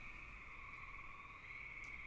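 Faint steady background noise of a home voice recording: a low hiss with a thin, constant electronic whine.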